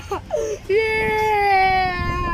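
A boy crying aloud: a few short broken sobs, then, just under a second in, one long wail that sinks slowly in pitch.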